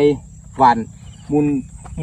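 Insects such as crickets in the paddy field chirring as a steady, high-pitched tone.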